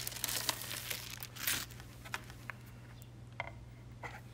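Rustling and crinkling of a vinyl record's inner sleeve as the record is slid out and handled, fading after about a second and a half. A few light clicks and taps follow, over a steady low hum.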